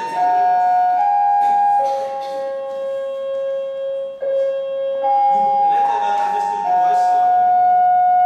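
A slow, high, flute-like tune of about eight long held notes, the pitch stepping up and down between them, with one much longer low note in the middle.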